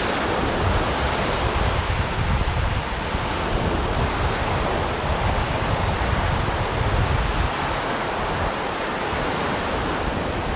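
Choppy surf breaking and washing up the beach, a steady rush, with wind buffeting the microphone as a low rumble that eases about three-quarters of the way through.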